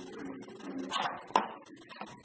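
Plastic packaging being handled as white headphones are pulled out of their hard black plastic tray: soft rubbing with a few clicks and one sharp snap about one and a half seconds in.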